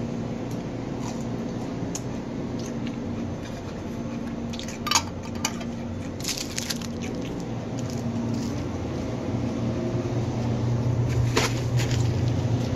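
Kitchen handling noises: a few short knocks and clinks, over a steady low hum that grows a little louder in the second half.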